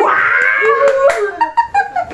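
A woman's excited squeal of delight, sliding up in pitch and held for about a second, then breaking into laughter, with a couple of sharp claps or smacks in the middle.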